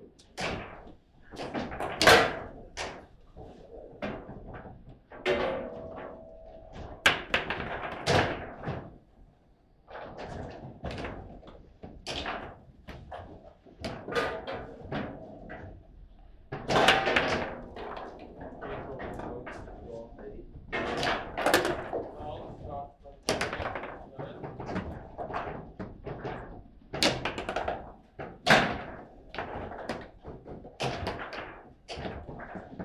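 Foosball (table football) being played: the ball striking the figures and table walls, and rods knocking against the table, give sharp clacks and thunks at irregular intervals.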